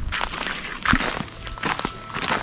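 A few crunching footsteps on dry dirt and loose gravel.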